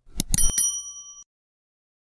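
Subscribe-button sound effect: a few quick clicks, then a bright bell ding that rings for under a second and cuts off.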